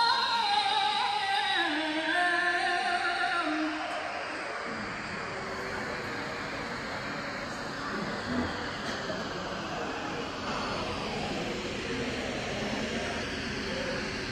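A woman's melodic Qur'an recitation (tilawah) holds and ends a long ornamented phrase about four seconds in. A pause follows with only steady background noise and no voice.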